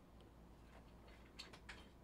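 Near silence: room tone with a couple of faint clicks about a second and a half in, from sealed cardboard trading-card boxes being set in place on a table.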